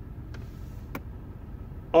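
A vehicle engine idling, heard as a steady low rumble inside the cab, with two light clicks about half a second apart.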